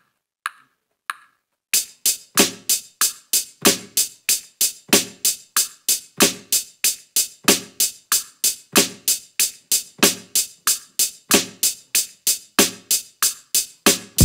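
Programmed drum loop from a software step sequencer at about 94 BPM: a few single hits, then the loop starts about two seconds in, with a hi-hat on every eighth note and a snare backbeat.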